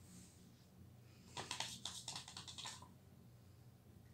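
Paintbrush dabbing and scrubbing on watercolour paper: a quick run of scratchy strokes, about ten a second, lasting just over a second in the middle, over a faint steady room hum.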